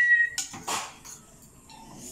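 A person's high-pitched squeal, a pained reaction to spicy noodles. It rises quickly, holds one steady note for under a second and cuts off sharply, followed by two short breathy noises.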